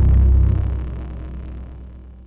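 A deep sub-bass boom, a sound-designed cinematic impact, loudest at the start and fading slowly away.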